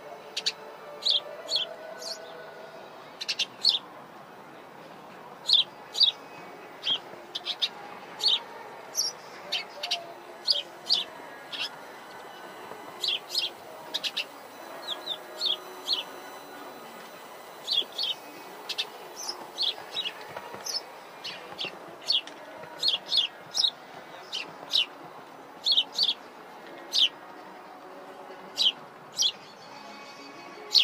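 Small birds chirping: short, sharp, high chirps at an irregular pace of about two a second, over a steady faint outdoor background din.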